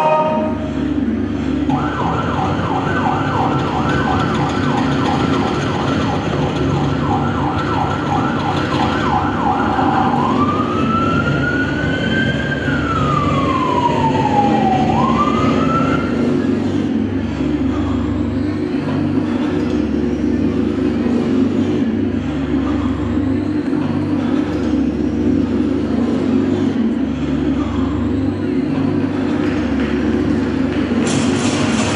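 Recorded emergency-vehicle siren sound effect: a fast warbling yelp, then a slow rising and falling wail that stops about halfway through. A steady low rumble like a vehicle engine runs beneath it.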